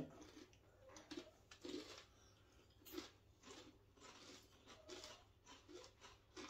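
Faint crunching of hand-cooked potato crisps being bitten and chewed, in irregular crunches about twice a second.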